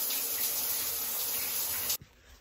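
Water spraying steadily from a shower head, an even hiss that cuts off suddenly near the end.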